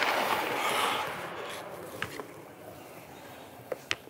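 Ice-skate blades scraping across the rink ice. The scrape is strongest in the first second and fades over the next couple of seconds, followed by a few faint clicks.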